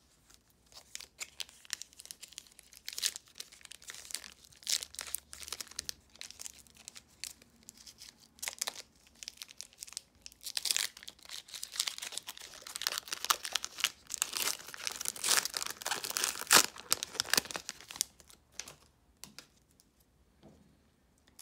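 Foil trading-card pack wrapper crinkling as it is handled and then torn open, a rapid run of crackles that is sparse at first and densest and loudest in the second half.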